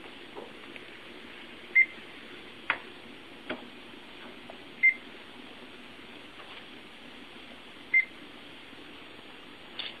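Handheld barcode scanner beeping three times, about three seconds apart, each short beep marking a book's barcode being read. There are two faint knocks between the first and second beeps.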